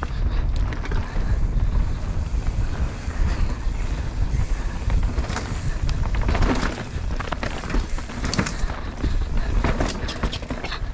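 Mountain bike descending a dirt trail, ridden with the camera on the bike or rider: wind buffets the microphone as a steady low rumble while the tyres roll over dirt. From about halfway on, a series of sharp rattles and knocks is heard as the bike runs over rougher ground.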